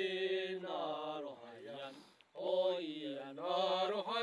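A single voice chanting in long, slowly bending held notes, two phrases with a short break between them, laid under the pictures as background music.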